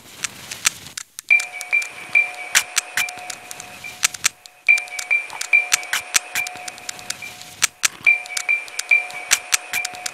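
Experimental electronic sound-design track: irregular sharp crackling clicks over a repeating high chiming note and a steady lower tone. The tones come in about a second in, break off briefly twice and restart.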